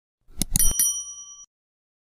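Subscribe-button sound effect: a few quick mouse clicks about half a second in, then a single bright bell ding that rings for most of a second and stops sharply.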